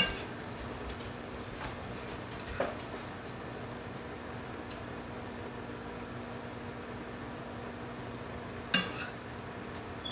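Metal serving spoon clinking against a frying pan and stainless steel bowls while food is dished out: a sharp clink at the start, a light tap a couple of seconds in, and a louder ringing metal clink near the end, over a steady low hum.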